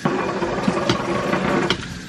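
A steady mechanical hum from a machine, starting suddenly and cutting off after nearly two seconds, with a few light clicks from the spatula stirring in the pot.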